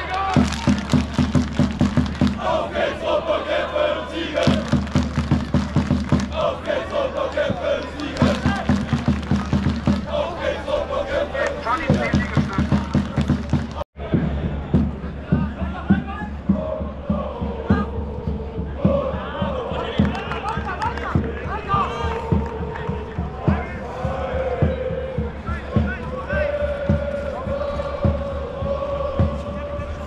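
Football crowd in the stand singing a chant together over a steady drum beat, in repeating phrases. About 14 s in it cuts off abruptly, and a sung chant with long held notes follows over the beat.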